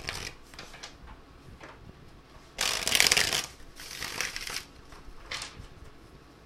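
A tarot deck being shuffled by hand: a few short card rustles, then a louder burst of shuffling about halfway through lasting about a second, followed by a second burst and a short one near the end.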